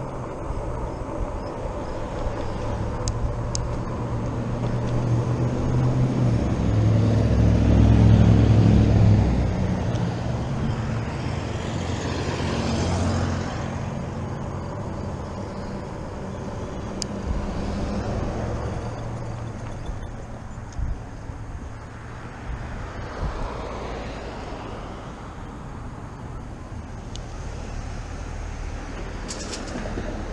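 Riding noise from a fat-tyre e-bike on pavement: wind rumbling over the handlebar-mounted action camera and tyre noise, swelling loudest a few seconds in and easing after. Road traffic is heard toward the end as the bike nears a busy intersection.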